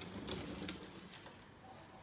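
Quiet room tone with a few faint clicks in the first second or so.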